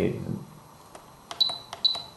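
Spektrum DX7se radio-control transmitter keys being pressed. A click comes about a second in, then near the end two short high beeps, each with a key click, in quick succession. Each beep confirms a press of the adjust key stepping to the next model memory.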